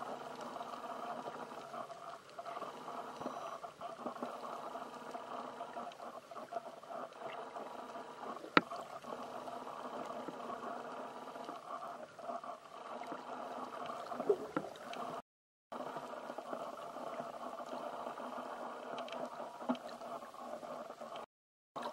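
Underwater sound picked up by a camera below the surface: a steady muffled hum with several steady tones in it. There is one sharp click about eight and a half seconds in, and the sound drops out for a moment about three-quarters of the way through.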